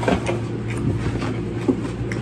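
A steady low background hum, with a few light knocks and rustles of a cardboard Happy Meal box being handled.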